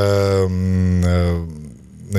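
A man's voice holding a drawn-out hesitation sound, a long 'ehh', for about a second and a half. Its pitch sinks slightly as it fades out.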